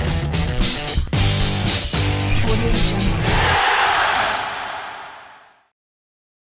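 Short intro jingle music with a regular beat and a heavy bass line. About three and a half seconds in the beat stops and a rushing swell of noise takes over, fading away to silence before the end.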